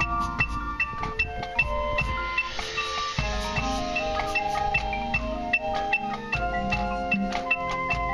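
Marching band front ensemble playing mallet percussion, marimbas and vibraphone, a high note repeating at an even pulse over sustained chords. A brief hissing swell rises about three seconds in.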